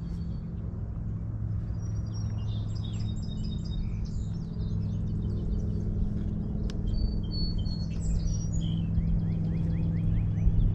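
Songbirds chirping and trilling in many short, high calls over a steady low hum.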